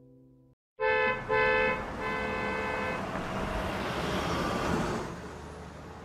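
Bowed strings fade out, and after a brief silence a car horn honks twice, then sounds again for about another second over traffic noise. The traffic noise swells and then drops away about five seconds in.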